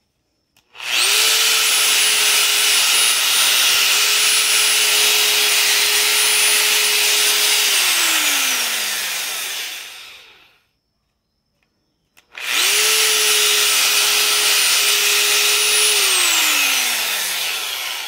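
Bosch 5-inch angle grinder running free with a bare spindle, switched on twice. Each time it spins up quickly, runs steadily with a high whine for several seconds, then winds down with a falling pitch once switched off. It is test-running on newly fitted 5x8x15 carbon brushes, which have brought the stalled grinder back to work.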